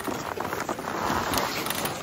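Snow crunching and scuffing, with rustling ski clothing and small knocks from skis and poles, as a fallen beginner skier struggles on the snow.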